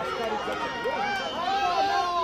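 Several high-pitched voices shouting and calling over one another at once: youth rugby players and touchline spectators yelling during a run of play.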